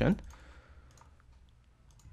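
A few faint, scattered clicks of a computer keyboard and mouse while code is selected and copied.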